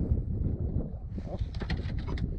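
Wind rumbling on the microphone, with a few faint clicks and ticks in the second half.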